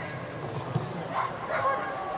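German shepherd giving three or four short high-pitched calls, spread across the two seconds.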